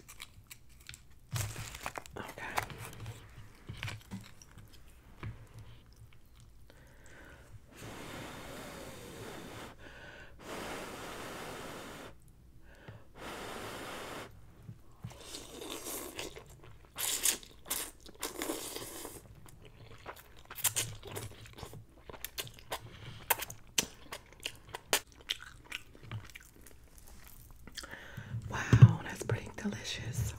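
Ramen noodles being slurped and chewed close to the microphone: three long slurps of about two seconds each in the middle, then wet chewing with many sharp mouth clicks and smacks.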